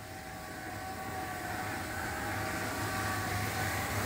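Small wheels of a pull-along plastic shopping basket rolling over a tiled floor, a rumble that slowly grows louder, over a steady hum with a few faint steady tones.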